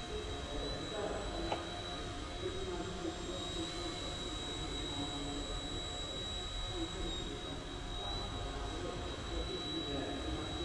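Eachine E129 micro RC helicopter hovering, its motor and rotor giving a steady high whine that wavers slightly in pitch, in a large gym hall.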